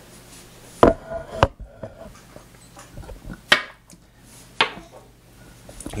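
Four sharp knocks and clicks, spaced out, of objects being handled on a wooden tabletop.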